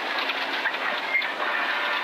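Cabin noise of a Toyota GR Yaris rally car at speed on a gravel road: a steady rush of engine, tyre and stone noise with rattling.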